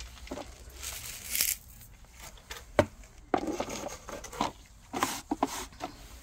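Handling noise at a potting table: rustling and light scraping from a hand over a plastic potting basin and its insert, with scattered soft knocks and one sharp click about three seconds in.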